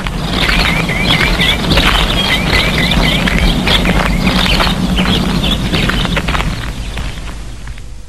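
Birds chirping in quick repeated runs over a busy background of clicks and a low hum, fading in and then dying away near the end.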